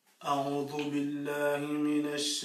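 A man's voice reciting the Quran in melodic tilawa style, starting about a quarter second in with long, drawn-out held notes.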